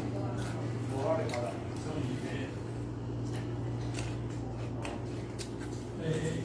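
A person eating rice by hand: scattered small clicks and mouth sounds of chewing, over a steady low hum.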